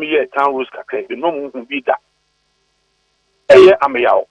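A man speaking over a telephone line, his voice thin and narrow, for about two seconds. After a pause of about a second and a half, a louder, fuller voice cuts in near the end.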